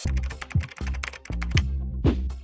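Intro theme music for an animated title sequence: fast, sharp ticking clicks over deep drum hits that drop in pitch, twice.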